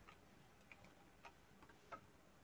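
Near silence with about five faint, separate computer keyboard keystrokes as letters are typed.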